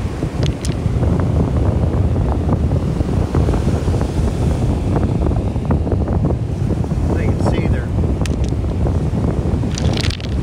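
Wind buffeting the microphone in a steady low rumble, with a few sharp clicks of beach cobbles knocking together as they are handled.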